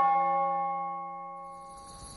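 A bell struck once, ringing with several clear steady tones and dying away over about two seconds.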